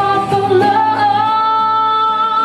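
Female singer holding one long sung note, with a slight waver, from about half a second in, over acoustic guitar accompaniment.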